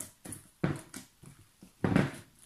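A hand kneading and squeezing a large batch of fluffy slime, made of glue, shaving foam and boric acid, in a plastic bowl: a few irregular squelches, the loudest near the end.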